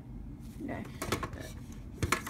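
Mostly speech: a quiet spoken "okay" over low room noise, with a few faint clicks about a second in.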